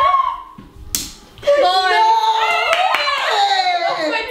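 Women laughing and shrieking excitedly at a near-miss in a balloon-popping game, with one sharp click about a second in.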